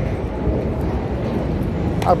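Steady low outdoor rumble with no distinct single source and no clear rises or strokes.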